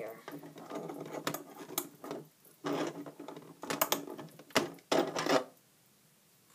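A plastic loom board and rubber loom bands being handled: irregular rubbing and scraping with several sharp plastic clicks, the loudest about two-thirds of the way in, as bands are stretched over the pegs and the board is moved.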